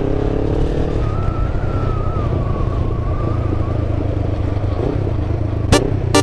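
Kawasaki ER-5 parallel-twin motorcycle engine running steadily at low revs while riding. Electronic music cuts in just before the end.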